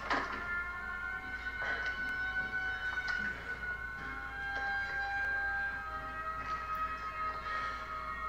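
A film soundtrack playing quietly: long held high tones overlapping and changing every second or two, with a few faint clicks and knocks.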